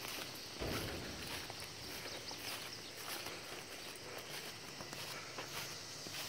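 Footsteps walking across grass, with a low thump a little under a second in, over a steady high chirring of crickets.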